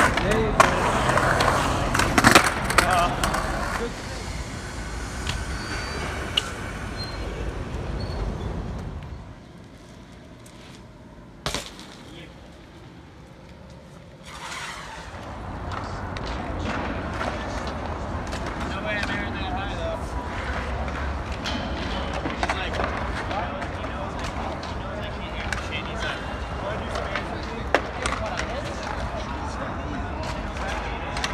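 Skateboard wheels rolling on the concrete of a skatepark bowl, with sharp board impacts in the first few seconds. Later come a steady bed of rolling noise on concrete and people chatting in the background.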